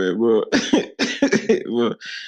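Speech only: a person talking steadily.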